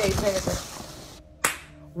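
Handling noise from a phone that is filming as it is grabbed and moved about: about a second of loud rustling hiss, then a single sharp click or knock.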